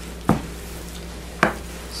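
Two sharp knocks about a second apart: a wooden loaf soap mold with a silicone liner being set down or bumped against the table.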